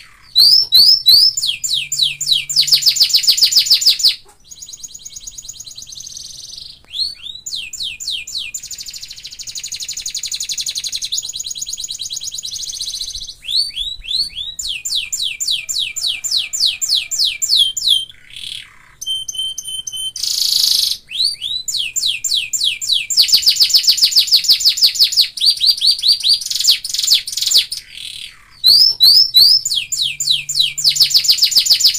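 Domestic canary singing: long rolling runs of rapid repeated notes, each a quick downward sweep, broken by short pauses. About two-thirds through comes a brief held steady whistle.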